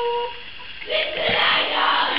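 A girl's high-pitched voice holding a drawn-out squeal that breaks off right at the start, then after a short lull a breathy, noisy stretch of laughter.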